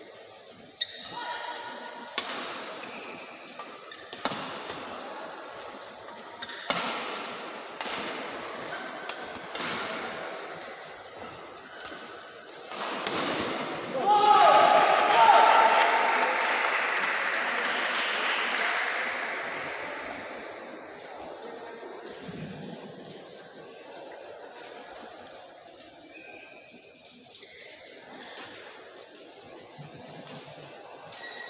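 Badminton racket strikes on a shuttlecock during a rally, sharp hits about every one to two seconds in a reverberant hall. About fourteen seconds in comes the loudest moment: a loud shout and a few seconds of voices, then low hall background and scattered talk.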